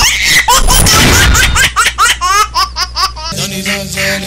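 Loud laughter sound effect in a TV comedy show's opening title sting: a quick run of rising 'ha-ha' pulses. A little over three seconds in the laughter stops and steady music takes over.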